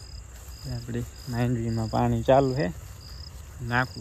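Crickets chirping, short high chirps repeating about every half second, under a man's voice talking.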